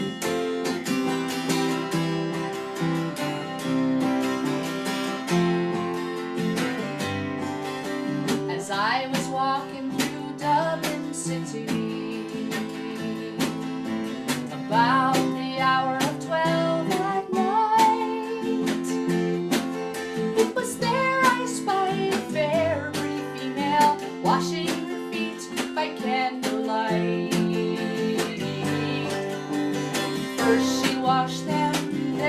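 An acoustic guitar and a strummed mountain dulcimer play an Irish folk song together. A woman's singing voice joins about nine seconds in and carries on over the instruments.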